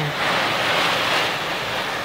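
Heavy wind-driven rain from a squall line beating on a vehicle's windshield and body, heard from inside as a loud, steady rush.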